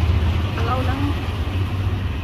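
An elderly woman speaking briefly in Khmer over a steady low rumble.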